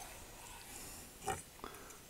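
Faint sound of a knife cutting through a grilled beef steak on a wooden board, with a short, slightly louder scrape-like sound a little past halfway.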